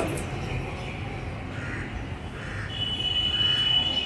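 A crow cawing three times, short calls about a second apart, starting about a second and a half in. A steady high whistling tone comes in near the end.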